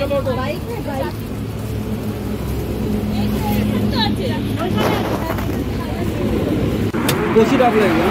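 A motor vehicle engine running steadily nearby, a low even hum, with people's voices talking over it. The hum drops away near the end.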